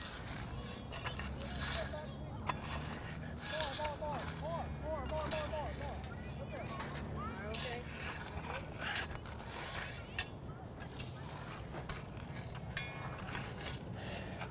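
Shovels scraping and biting into loose soil in short, irregular strokes, moving dirt back into a tree's planting hole. Faint voices can be heard in the middle.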